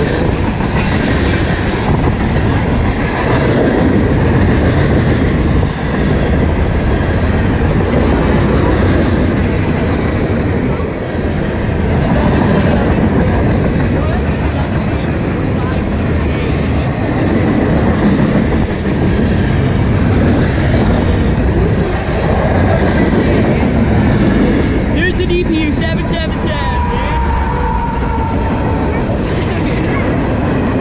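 A long freight train's cars, lumber-loaded flatcars and boxcars, rolling past at close range: a loud, steady rumble and clatter of steel wheels on the rail that keeps going without a break.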